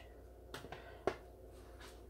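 A few faint taps and knocks, the clearest about a second in, as scooped-out spaghetti squash seeds are thrown into a trash can.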